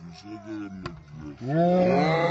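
Cricket bat striking the ball with a single sharp crack a little under a second in, as the shot is hit for six. It is followed, about one and a half seconds in, by a loud drawn-out call that rises in pitch and then holds.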